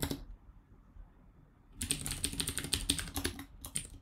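Computer keyboard typing: after a brief quiet pause, a quick, dense run of keystrokes starts about two seconds in and runs almost to the end.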